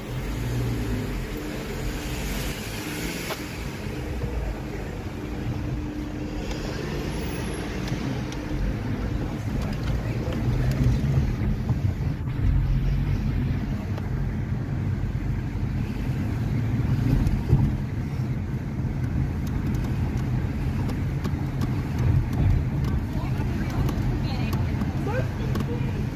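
Low engine and tyre rumble of a car driving slowly in city traffic, heard from inside the cabin.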